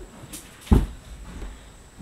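A short rustle, then a dull thump about three-quarters of a second in, followed by a few softer knocks.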